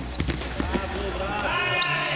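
Live sound of an indoor futsal game: the ball struck and bouncing on the hard court floor, sharp knocks mostly in the first second, with players' voices calling out across the hall.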